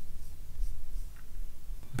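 A pause in a narrated recording: a steady low hum with faint scratchy ticks over it, and no voice.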